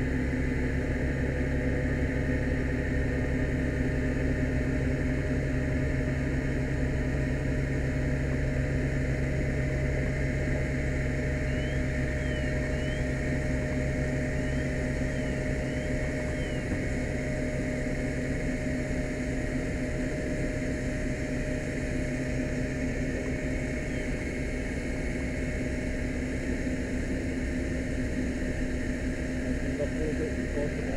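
An engine running steadily at constant speed, a low even hum that holds one pitch throughout. A few faint, brief high chirps come through about twelve to sixteen seconds in.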